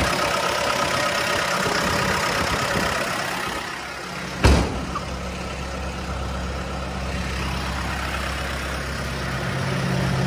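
JLG G9-43A telehandler's diesel engine idling steadily, sounding healthy. A single sharp thump about four and a half seconds in, after which the engine's low hum is heavier.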